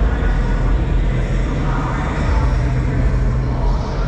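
Steady, loud low rumble of a large exhibition hall's background noise, with no single clear source standing out.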